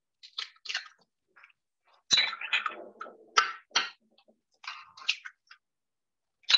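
Eggs being cracked into a Thermomix's steel mixing bowl after its lid is opened: scattered knocks and clatter of shell and lid handling, the sharpest knocks about two seconds in and again about three and a half seconds in.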